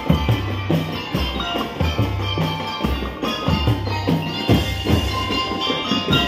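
A drum and lyre corps playing: mallet-struck metal-bar lyres ring out a melody over a drum kit and bass drums keeping a steady beat, with repeated low notes underneath.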